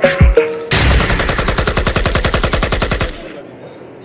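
Hip-hop track with deep bass kicks, then a machine-gun sound effect: a rapid burst of shots, about ten a second, lasting over two seconds. It cuts off suddenly near the end, leaving faint hall noise.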